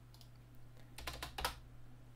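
Computer keyboard keystrokes: a quick run of several key presses about a second in, after a couple of faint clicks.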